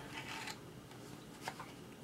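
Faint rustling and handling noise, with a light click about one and a half seconds in.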